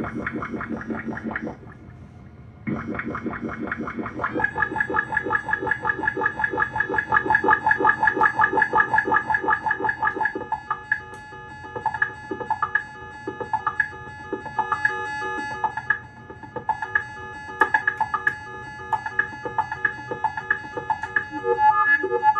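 Electronic improvisation on Moog Moogerfooger effects modules: a buzzy pulsing sound that cuts out briefly and comes back in the first few seconds, then a steady pitched drone with a fast flutter. About ten seconds in it breaks into a rhythmic pattern of short repeated pulses.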